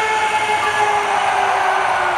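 Arena PA sound system playing a long, horn-like chord that slides slowly down in pitch, over the steady noise of a large crowd during the pre-game intro.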